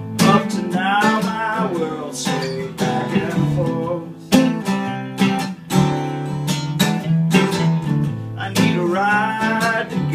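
An acoustic guitar strummed together with an electric guitar picking a lead line. A wavering melody rises over them near the start and again near the end.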